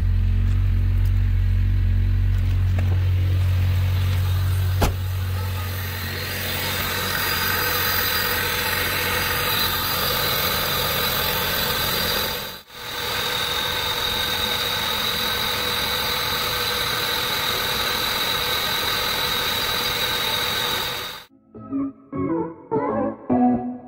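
Honda Del Sol's four-cylinder engine idling steadily with a coolant funnel on the radiator, bleeding air out of the cooling system after a heater hose replacement. There is a single click about five seconds in.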